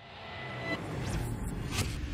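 Animated logo sound effect: a low rumble with a whooshing wash that swells up out of silence, with two sharp swishes, about halfway and near the end.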